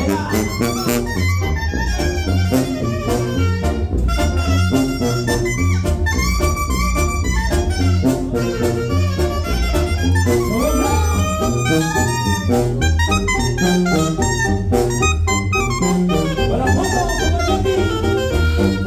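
Mexican banda playing live and unamplified, with clarinets carrying the melody together over a low bass line and drum and cymbal strikes.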